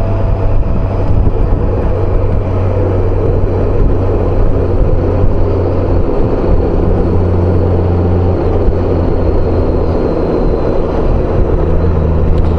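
Honda Gold Wing motorcycle cruising at steady speed: a low, even engine hum under loud wind rush on the bike-mounted microphone.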